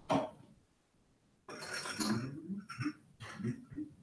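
A short, sharp burst right at the start, then from about a second and a half in, glassware clinking and clattering as a shot glass is fetched.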